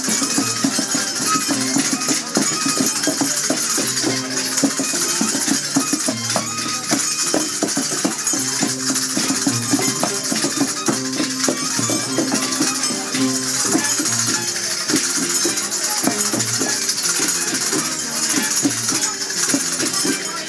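Andean fiesta music for a negritos dance: string instruments play a repeating melody with a regular low bass note, over continuous shaken rattling percussion.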